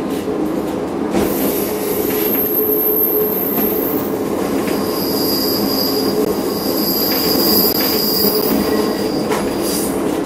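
Train running along curving track, with steady wheel-on-rail running noise and a high-pitched wheel squeal on the curve that sets in about a second and a half in and holds until near the end.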